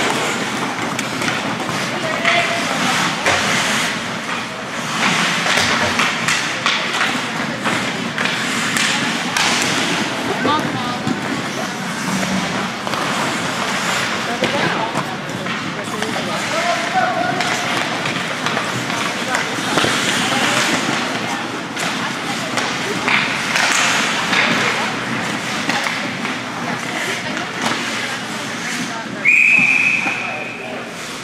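Ice hockey play in a rink: a steady din of skates and sticks with repeated sharp knocks of sticks, puck and boards. Shortly before the end a loud, steady whistle blast sounds: the referee's whistle stopping play at the net.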